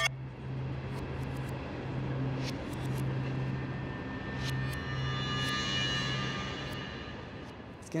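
Steady outdoor traffic noise under a low, even hum that drops out briefly a few times, with a few faint ticks.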